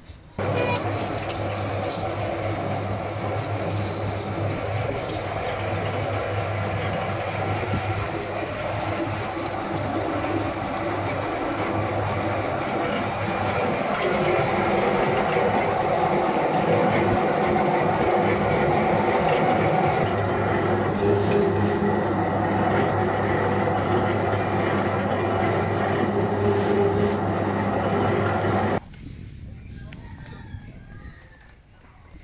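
Sugarcane juice press running, its motor humming steadily while the grooved steel rollers crush a cane stalk. It gets a little louder about halfway through and cuts off suddenly near the end.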